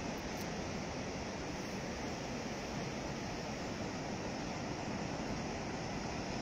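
Atlantic sea waves washing on a rocky shore: a calm, steady surf noise with no single breaker standing out.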